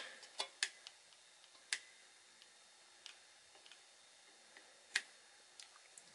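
A few faint, sharp clicks and taps as a soldering iron tip and fingers work against a MOSFET's metal legs on a circuit board, several in the first two seconds and one more near the end, over quiet room tone.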